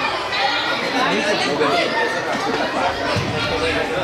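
Many voices chattering and calling out at once: spectators and players in an indoor soccer arena, overlapping into a continuous hubbub.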